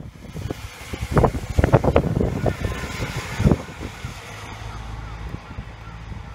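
Wind buffeting a phone microphone outdoors in uneven gusting thumps, loudest in the first few seconds, then settling into a steadier low rumble.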